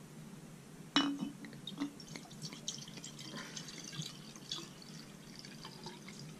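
Sake poured from a glass bottle into a ceramic tokkuri decanter: one sharp clink of glass on ceramic about a second in, then a light, uneven trickle and splash of liquid filling the narrow-necked flask.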